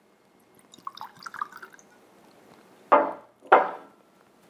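Liquid poured from a bottle into a goblet in a short, faint trickle lasting about a second. Near the end come two short vocal sounds from a man, half a second apart, louder than the pour.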